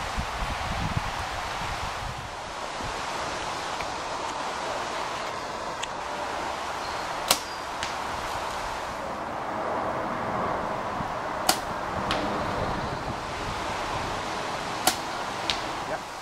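Compound bows shot three times. Each shot is a sharp snap at the release, followed about half a second later by a fainter thud as the arrow strikes the target, over a steady outdoor background hiss.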